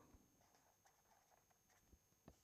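Near silence, with faint scratches and taps of a felt-tip marker writing on paper.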